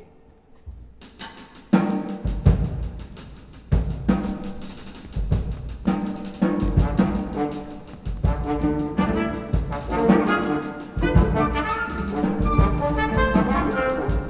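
Live orchestra playing a contemporary opera score, starting about a second in. Brass plays loud, accented chords, punctuated by heavy irregular timpani and drum strokes.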